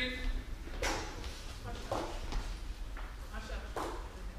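About five scattered sharp knocks and taps spread over a few seconds.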